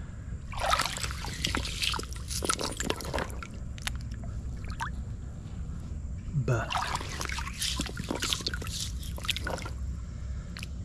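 A gloved hand swishing and splashing through shallow creek water over a gravel bottom, in two bouts of splashing with sharp little clicks, over a steady low rumble.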